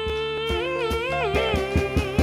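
A woman hums a wordless melody: a long held note that then bends through a few pitches, backed by a live band with steady drum beats coming in about halfway through.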